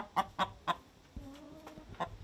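Hens clucking: a run of short, quick clucks in the first second, then a pause.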